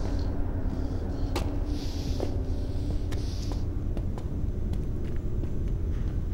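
Low, steady rumbling drone with a faint hum over it, scattered light ticks and two soft hissing swells about two and three seconds in.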